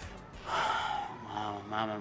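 A young man's loud, distressed breath about half a second in, followed near the end by short voiced cries that run into the words "Mamá, mamá".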